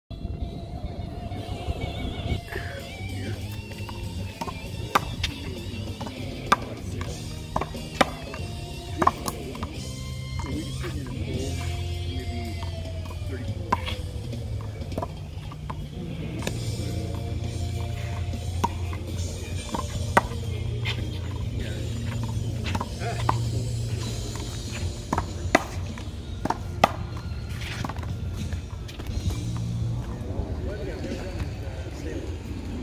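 Sharp smacks every one to a few seconds as a racquetball is struck with a racquet and hits a concrete wall, over music with vocals that plays throughout.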